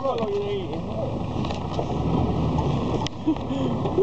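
A person's voice over steady low rumbling background noise, with a single sharp click about three seconds in.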